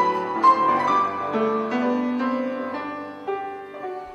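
Grand piano played solo: a slow, melodic passage of notes that ring and die away, growing softer toward the end.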